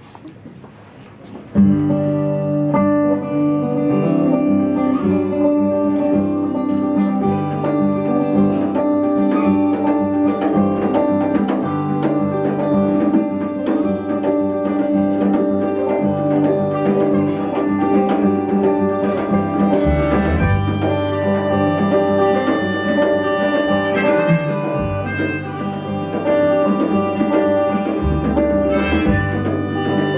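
A live folk band begins a song about a second and a half in. An acoustic guitar in an open tuning is strummed under a harmonica, over bass notes and band accompaniment.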